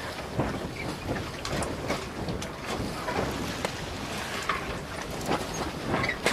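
Ship-at-sea ambience: steady wind and water noise with irregular creaks and knocks.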